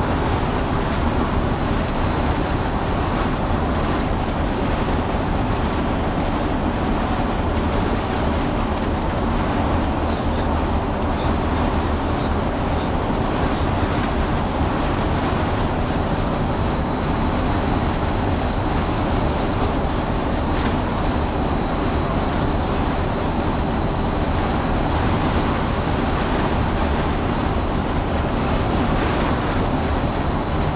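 Inside the cabin of an MCI 96A3 coach at freeway speed: a steady low diesel engine drone mixed with tyre and road noise, with faint clicks and rattles throughout.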